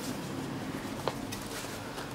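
Quiet background with a steady low hum and a faint even hiss, broken by one light click about a second in.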